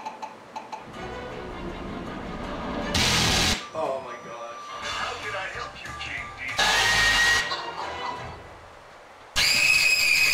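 A chopped-up animated-film soundtrack of music and cartoon character voices in short spliced snippets, with two loud bursts of noise about three and seven seconds in. Near the end a loud, shrill scream cuts in suddenly.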